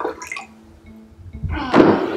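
Water pouring briefly from a plastic filter pitcher into a glass, then about one and a half seconds in a thunk as the pitcher is set down on the counter, the water inside sloshing.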